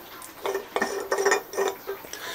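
Aluminium beer cans clinking and knocking together as they are rummaged through and handled, starting about half a second in, with a short metallic ring after the knocks.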